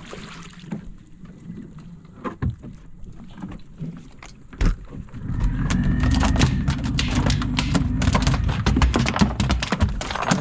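A hooked mahi-mahi is hauled up the side of a fishing boat: one loud thud about halfway through, then a quick run of knocks over a low rumble as the fish thrashes against the boat.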